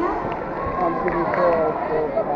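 Crowd chatter in a large sports hall: many voices talking at once, steady throughout.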